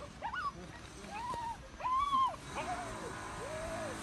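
A puppy whimpering in a run of about five short, high, arching cries, the loudest about two seconds in and the later ones lower and weaker. They are the distress cries of a puppy stuck in a hole in a garden wall.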